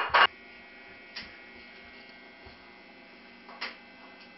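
A steady background hum with a few brief knocks: a loud cluster right at the start, a small click about a second in, and another knock near the end.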